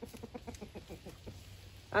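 Hens clucking: a faint, quick run of short clucks.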